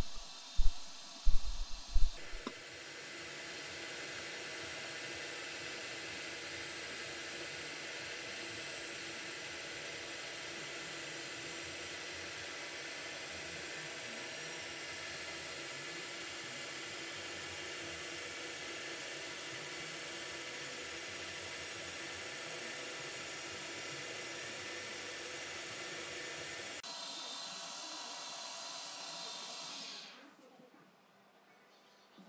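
Schaublin lathe running steadily while a small brass pin is turned in the collet chuck: an even, hiss-like machine noise with a faint hum. A few sharp knocks in the first two seconds; near the end the lower hum drops away.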